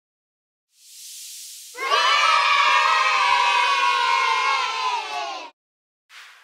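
A group of children cheering and shouting together for about three and a half seconds, cutting off abruptly. It follows a short hiss that swells in about a second in.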